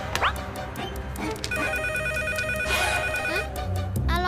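A mobile phone ringing, a trilling electronic ring of about two seconds in the middle, over background music. A quick rising swoop sounds just after the start.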